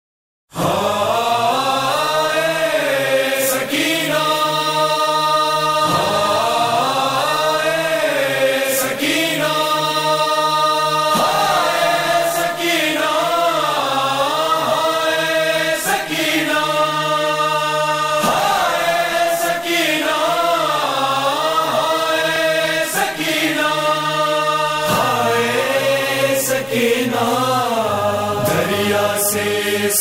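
Voices chanting a slow, rising-and-falling noha lament over a held low drone, with a sharp beat every couple of seconds; it starts after half a second of silence.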